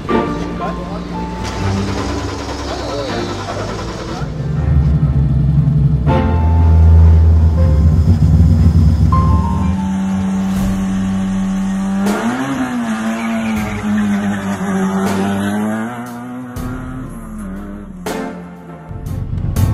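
Rally car engines at full throttle on a stage road, running loud and low for several seconds, then a second car whose engine pitch rises and falls with throttle and gear changes over the last few seconds. Music plays in the first few seconds.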